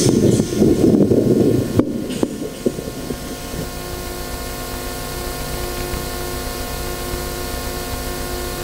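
Handheld microphone being handled through a public-address system: rubbing noise and a couple of sharp knocks in the first two seconds, then a steady low hum with a few held tones.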